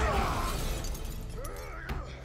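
Movie fight sound effects: a crash with something breaking at the start, then a short man's grunt and a sharp hit just before the end.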